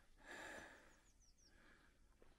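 Near silence: a faint outdoor hush with a soft breath about half a second in, and a few very faint high chirps a little after a second.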